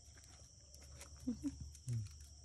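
An askal (Filipino street dog) whining in a few short whimpers about a second and a half in, begging for food held above her.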